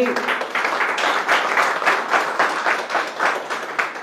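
Audience applauding: many hands clapping in a dense, irregular patter.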